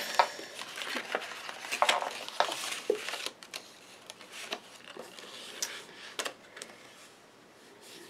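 Patterned paper being handled, folded and pressed flat on a craft mat: light rustles, taps and rubbing, busiest in the first three seconds, then sparser and quieter.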